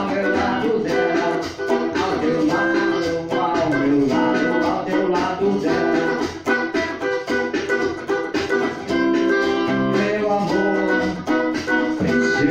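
A man singing a song to guitar accompaniment, the music running steadily throughout.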